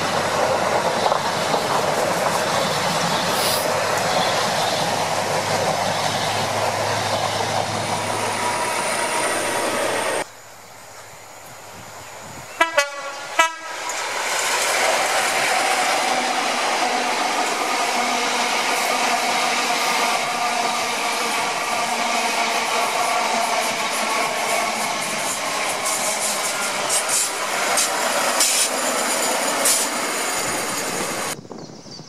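InterCity 125 High Speed Train with Class 43 diesel power cars passing at speed, its engines and wheels on the rails making a loud, steady noise that stops abruptly about ten seconds in. A couple of seconds later come two short horn blasts, then another HST passes and grows loud.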